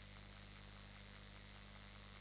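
Steady electrical mains hum with hiss, with two faint ticks just after the start.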